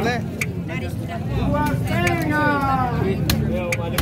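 People talking, with a few sharp knocks of a cleaver chopping a tuna head on a wooden chopping block, the last two close together near the end.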